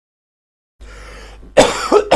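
A person coughing: a faint hiss comes in, then a loud, sudden cough about a second and a half in.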